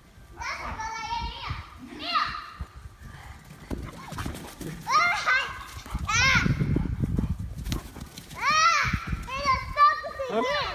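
Young children squealing and shrieking in play, in short high-pitched cries that rise and fall in pitch, coming in three clusters.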